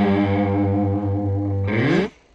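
Distorted electric guitar music holding a sustained chord, which slides up in pitch near the end and cuts off abruptly.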